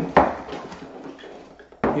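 Cardboard packaging being handled as a retail box is opened: a sharp knock just after the start trailing into soft cardboard sliding and rustling, then a second knock near the end as a small inner box is lifted out.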